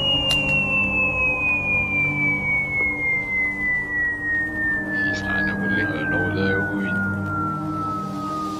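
Cartoon falling sound effect: one long whistle sliding steadily down in pitch the whole time, over a low, pulsing musical drone.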